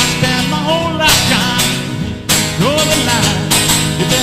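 Live solo acoustic guitar strummed with a strong chord roughly every second, under a man's singing voice that slides between notes.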